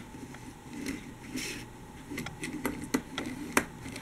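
Small die-cast Siku toy train pushed by hand along plastic toy rails: light, scattered clicks and a short rolling rattle of its wheels on the track, about a second and a half in.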